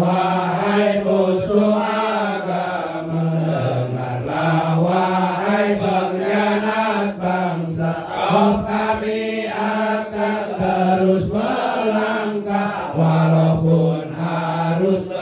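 A man's solo voice chanting an Islamic sholawat, drawing the words out in long held notes that step up and down in pitch.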